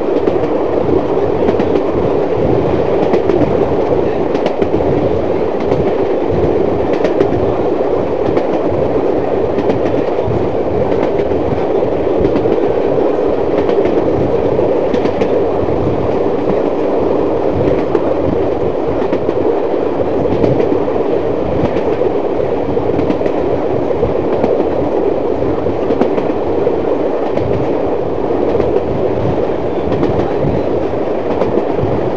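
Passenger train running at speed, heard from an open carriage window: a steady, loud rumble of wheels and running gear with wind buffeting the microphone, and faint clicks from the rail joints.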